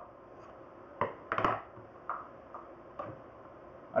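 Scissors snipping through the end of a frayed nylon rope and then being handled and laid down on a wooden board: a few sharp clicks and knocks, the loudest about a second and a half in.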